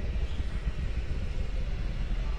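Steady low rumble of the Falcon 9 first stage's nine Merlin engines, heard from the ground far below the climbing rocket.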